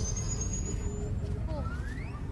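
Low, steady rumbling ambience from a TV episode's soundtrack, starting abruptly just before, with a faint high tone falling slowly over the first second and a few faint gliding tones near the end.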